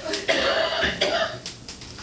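A person coughing and clearing their throat in several short bursts over the first second and a half, then quieter.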